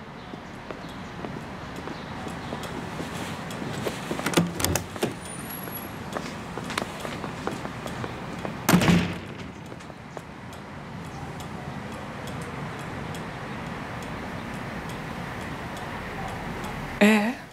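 A few clicks and knocks, then a single loud door thud about nine seconds in, over a steady background hiss.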